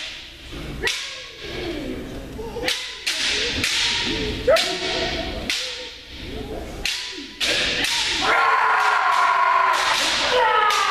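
Bamboo shinai strikes cracking against kendo armour, several sharp hits echoing in a gymnasium, mixed with the kendoka's shouted kiai. From about eight seconds in, many kiai shouts overlap into a sustained din of voices.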